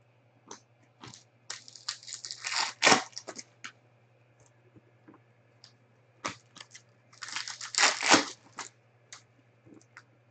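Chrome trading cards and crinkly plastic being handled. There are two bursts of crackling rustle, one about a second and a half in and a louder one near the eight-second mark, with light clicks of card edges between them.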